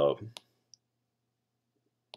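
One short, sharp click shortly after the start, a fainter tick a moment later, then near silence.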